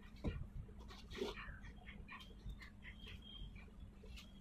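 Leaves being plucked by hand from a climbing spinach vine, with a brief rustle-and-snap about a quarter of a second in and another about a second in. Small birds give short, high chirps in the background through the second half.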